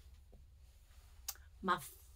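Quiet small-room tone with one short, sharp click a little over a second in; a woman's voice begins speaking near the end.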